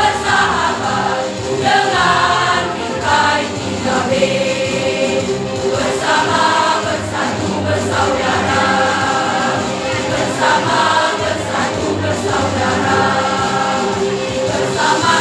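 A mixed school choir of girls and boys singing a march together, in held phrases of a second or two with short breaks between them.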